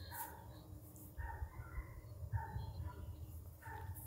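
A German shorthaired pointer whining faintly in short, repeated whimpers while standing held on the whoa command, over wind rumbling on the microphone.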